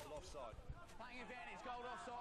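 Faint, distant voices calling and shouting across a rugby ground, with a single light knock a little over half a second in.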